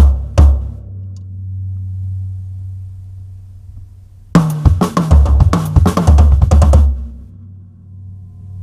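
Drum kit: the last few strokes of a lick with bass drum hits, then the drums ring out for about three and a half seconds. About four seconds in, the lick is played fast, a quick run of sixteenth-note and sextuplet strokes on snare and toms mixed with bass drum kicks, lasting about two and a half seconds before dying away.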